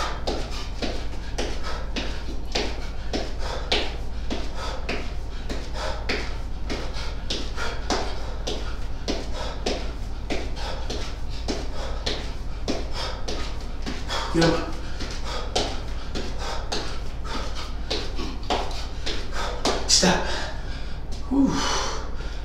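Quick footfalls of high knees on a thin exercise mat over a tile floor, a regular patter of about three steps a second, with hard breathing and a few loud breaths, a steady low hum beneath.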